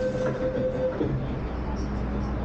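MTR metro train running, heard from inside the carriage: a steady electric whine cuts off about a second in with a brief falling note, leaving a steady low rumble.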